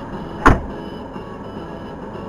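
A single sharp thump about half a second in, over the steady low hum of a car's cabin.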